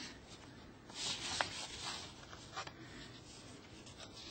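Faint rustling of papers being handled at the meeting desks, with a couple of light clicks.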